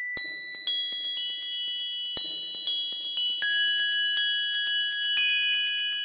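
Background music: a light melody of struck, bell-like notes, about two a second, each ringing on after it is hit.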